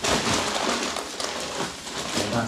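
Dry sand-mixed cement powder pouring from a paper sack into a plastic basin: a steady, rain-like rushing hiss that starts abruptly as the pour begins.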